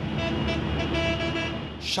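Road traffic noise with a vehicle horn sounding steadily through most of it.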